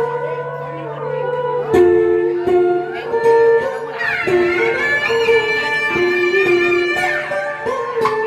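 Live traditional Vietnamese music played on an electric guitar, its held notes sliding between pitches, with a long sustained note that slides up about halfway through and falls away near the end.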